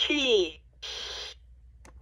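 Recorded voice from a LeapFrog Think & Go Phonics toy's speaker saying a short syllable, then a hissing letter sound about a second in. A single sharp click near the end, as of a letter button being pressed.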